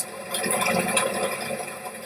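Steady background hiss with no other event.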